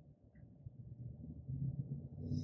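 Faint low-pitched background hum and room noise, growing slightly louder after the first half second.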